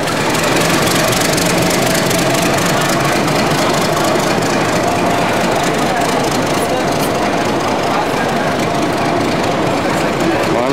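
Metre-gauge diesel locomotive running past close by as it pulls into the station, followed by its coaches rolling steadily along the platform.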